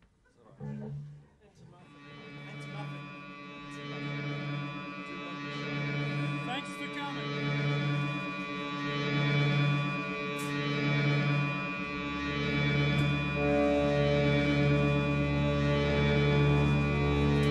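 A band playing live opens a song with a sustained droning chord that fades in and slowly swells. A low note pulses about once a second, and a deeper bass tone joins near the end.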